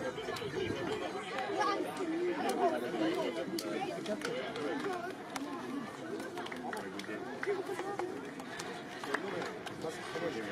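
Overlapping chatter of several men's voices exchanging greetings, with no single clear speaker.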